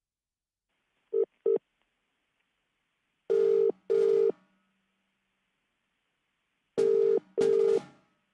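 Telephone ringback tone as heard through a phone line: a steady low tone in a double-ring cadence, two brief blips about a second in and then two full double rings, over faint line hiss, as the call rings unanswered at the other end.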